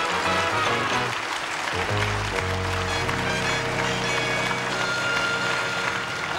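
Opening-titles theme music that ends on a long held chord from a little after two seconds in.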